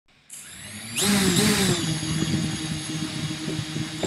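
Whirring, motor-like sound effect for an animated title intro. It starts faintly, swells loudly about a second in with gliding pitches, then holds steady with fine crackling clicks.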